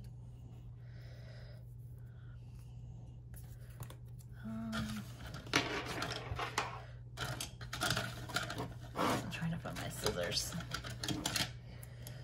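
Paper sticker sheet being handled and cut with a craft knife along a ruler: fairly quiet at first, then a run of quick scratches and clicks from about five seconds in, over a low steady hum.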